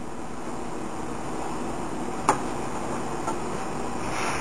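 Steady room noise with one sharp click a little over two seconds in and a faint tick about a second later.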